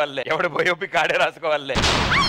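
A man talking, then near the end a sudden loud boom-like hit, a comedy sound effect, that carries on into music.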